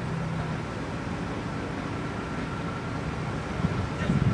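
Steady low hum of a vehicle engine running, with outdoor background noise; faint voices come in near the end.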